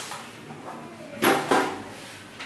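Two quick knocks about a second and a quarter in, as a toddler steps onto a floor scale.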